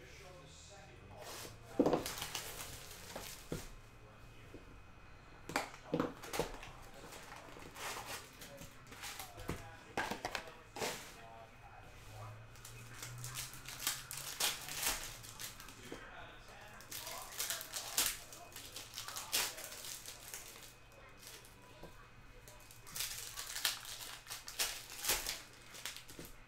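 Foil trading-card pack wrappers being torn open and crinkled, with cards and a cardboard box handled: scattered sharp crackles and snaps.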